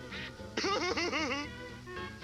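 A cartoon voice giggling in a quick run of about six rising-and-falling squeaky notes, over background music.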